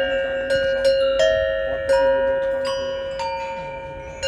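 Large metal bells mounted on wooden handles, struck one after another with a wooden mallet, about twice a second at different pitches. Each note rings on and overlaps the next.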